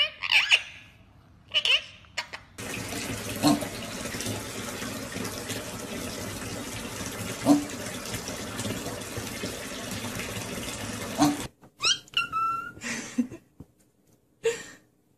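Water running steadily from a tap into a bath for about nine seconds, with a few soft knocks. Short bird chirps come before it, and a few whistled bird calls near the end.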